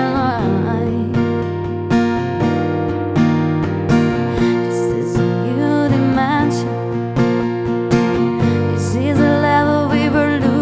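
Acoustic guitar strummed steadily, with a woman singing over it in phrases.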